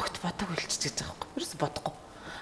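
Quiet, soft-spoken speech, close to a whisper, in a conversation.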